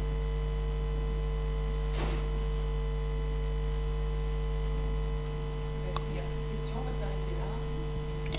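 Steady electrical mains hum, a low buzz with a stack of overtones, which drops slightly in level about five seconds in.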